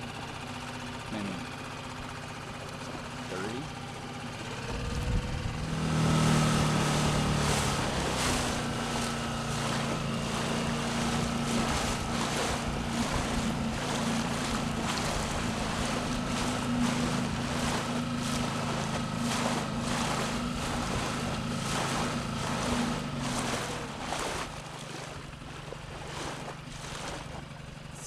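Small outboard motor on a dinghy running on the water. It is quieter for about five seconds, then throttled up to a steady, louder drone. Near the end it eases off as the pitch shifts.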